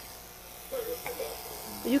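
Corded electric hair clippers buzzing steadily while cutting a toddler's hair.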